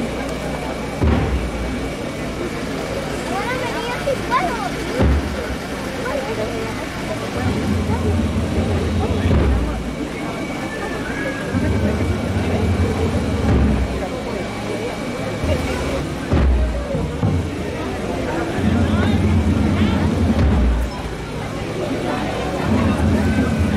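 A dense street-procession crowd talking, with low sustained brass notes in phrases of a few seconds and occasional deep drum beats, typical of a funeral-march band accompanying the float.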